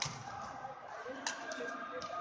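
Badminton racket strings striking a shuttlecock during a doubles rally: a sharp hit at the start, then two more sharp hits in quick succession about a second and a quarter in. Voices murmur in the background.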